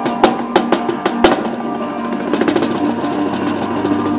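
Instrumental folk ensemble music: a few sharp drum strikes in the first second or so over sustained pitched instrument tones, then the instruments play on without the drum.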